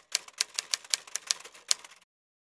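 Typewriter keys clacking as a sound effect, in quick uneven strokes of about six a second, keeping time with text being typed onto the screen.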